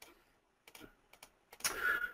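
A few faint, sparse computer mouse clicks, then a short breathy noise near the end.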